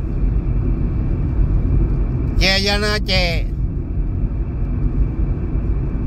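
Steady low rumble of road and engine noise inside a moving car's cabin. A man's voice speaks one short phrase about halfway through.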